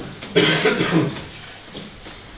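A short burst of coughing, starting sharply about a third of a second in and dying away within a second.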